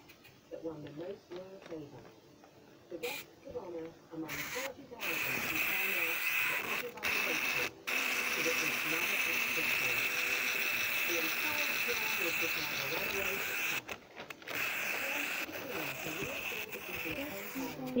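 Wind-up clockwork motor of a capsule Plarail toy engine whirring steadily for about ten seconds, with a few brief breaks. It stops shortly before the end.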